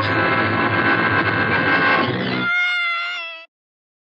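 Dramatic film background score: a dense, sustained orchestral chord cuts off about two and a half seconds in. A single wavering high held note follows and fades out about a second later.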